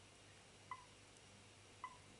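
Near-silent room tone with two brief, faint electronic beeps about a second apart, from a Canon EOS 200D Mark II as its controls are pressed.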